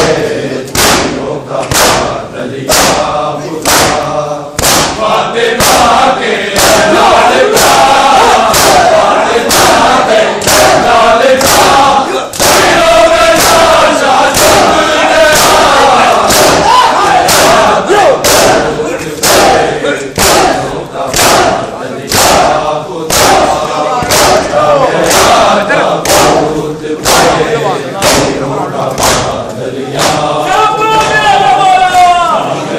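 A crowd of men doing matam: many open hands striking bare chests together in a steady beat of slightly more than one a second, under loud group chanting of a mourning lament.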